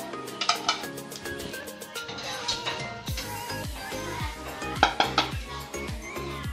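Metal clinks of a wire skimmer knocking against the pot as boiled potato chunks are lifted out, two close together just after the start and two more near the end, over background music that picks up a beat about halfway through.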